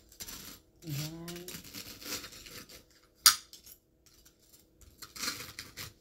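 A table knife sawing through toast and scraping on a plate, with a sharp clink of cutlery against the plate a little past halfway, the loudest sound. A brief hummed voice sound comes about a second in.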